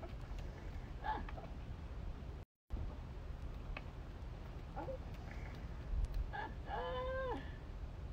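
A dog whines: a short, falling whine about a second in, then a longer, steady, high-pitched whine near the end.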